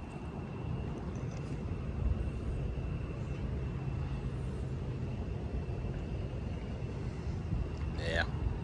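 Steady low rumble of open-air ambience on a ship's upper deck, with a faint steady high-pitched whine running through it.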